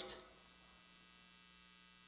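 Near silence: a faint, steady electrical hum in the recording, with the tail of a man's voice dying away just at the start.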